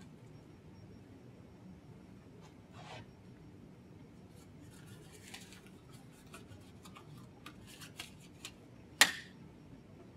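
Sterile latex gloves being pulled on by hand: faint rustling and light crinkling of the gloves and their wrapper, a few light clicks, and one sharp snap about nine seconds in, the loudest sound.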